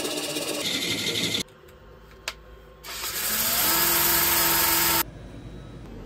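A gouge cuts into a large wooden bowl spinning on a lathe for about a second and a half, a hissing, tearing noise that stops abruptly. After a single click, a louder power tool runs with a steady motor tone for about two seconds and then cuts off suddenly.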